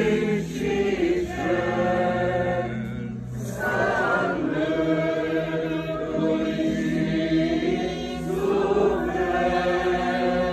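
A group of voices singing an Orthodox hymn together unaccompanied, in held, steady notes, with a brief break between phrases about three seconds in.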